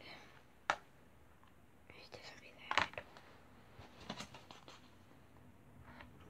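A person whispering quietly, broken by a few short sharp clicks: one under a second in, one near three seconds and several around four seconds.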